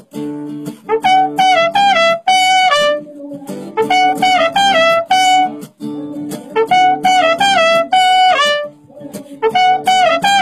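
Live trumpet playing short melodic phrases, each stepping down in pitch, with brief gaps between them, over guitar accompaniment in a Latin-flavored rock song.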